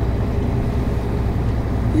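Steady low drone of a truck's engine, heard from inside the cab.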